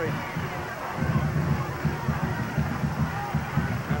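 Crowd noise in the stands at a high school football game: an uneven low rumble with faint voices mixed in.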